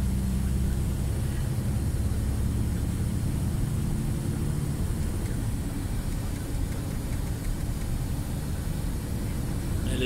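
Heavy truck's diesel engine and road noise heard inside the cab while driving on the motorway: a steady low drone that eases a little about halfway through.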